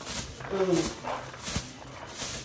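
Cooked rice pouring from a bowl onto a banana leaf with a soft hiss. A short vocal sound comes about half a second in, and a sharp click near the middle.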